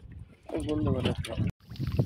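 A man's voice exclaiming, which breaks off abruptly about one and a half seconds in. Low water and boat noise follows.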